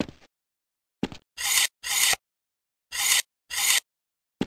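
Pencil scratching on paper as a cartoon sound effect: four short scribbling strokes in two pairs, about two seconds apart, after a brief soft knock about a second in.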